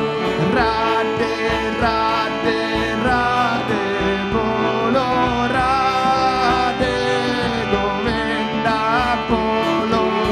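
Devotional bhajan music: a sustained drone holds steady under a melody line that bends and slides in pitch, over a regular low drum beat.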